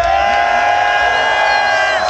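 A long, steady held shout over crowd cheering, with the bass beat dropped out underneath.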